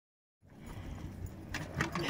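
Low rumble of wind and handling on the microphone outdoors, with a few light clicks or jingles in the last half second.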